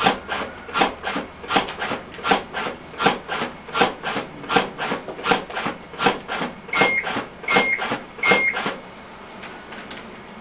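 AutoPulse mechanical CPR device cinching and releasing its chest band on a manikin, a regular motorised rasping at about four compressions every three seconds. Near the end three short high beeps sound with the last compressions, then the compressions stop.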